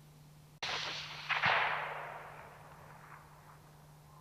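Rifle shot from a high seat: a sudden crack just over half a second in, then a louder report soon after, whose echo rolls away over about a second.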